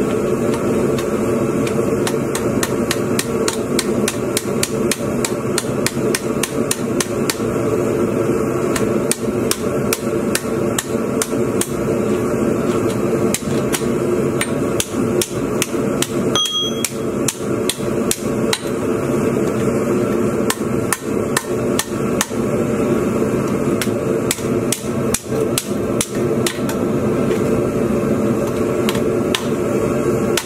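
Hand hammer striking red-hot steel on an anvil in a quick, steady run of blows, about three a second, with a short pause about halfway. A steady hum runs underneath.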